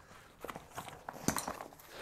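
A few light clicks and knocks from the side buckles of a Faraday duffel bag being unclipped and the bag being handled, about half a second in and again past the middle.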